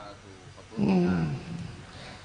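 A puppeteer's male voice making one short wordless vocal sound, falling in pitch, about a second in: the dalang voicing a wayang golek puppet character between lines.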